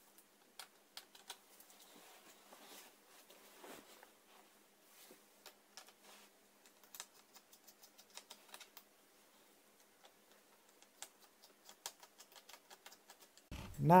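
Faint, scattered small clicks and taps of a screwdriver working the two small screws at the bottom of a laptop's plastic screen bezel and of hands handling the plastic.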